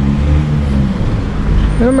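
Road traffic: a passing motor vehicle's engine running as a low, steady hum, with a short burst of speech near the end.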